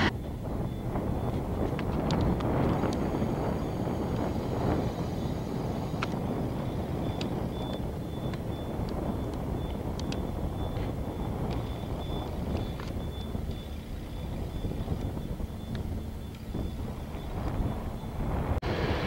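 Wind rushing over the microphone outdoors, a steady low rumble with scattered faint clicks. A faint, high-pitched beep repeats on and off through the middle.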